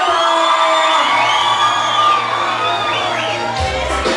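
Reggaeton music over a club sound system, recorded from within a cheering crowd. A low bass note holds through the middle, and heavy bass hits come in near the end.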